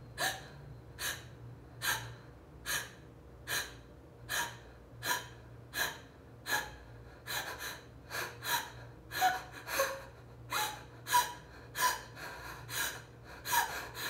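A woman's sharp, shallow gasping breaths through an open mouth, about one a second at first and quickening to about two a second from about halfway. It is the irregular fear breathing of the Alba Emoting exercise.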